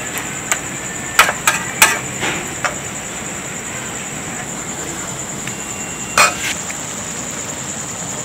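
Squid frying in sauce in a pan, with a steady sizzle. A metal spatula knocks and scrapes against the pan several times in the first three seconds, and once more about six seconds in.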